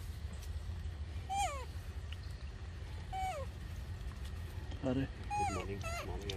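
Baby macaque giving three short crying calls, each sliding down in pitch, spaced about two seconds apart.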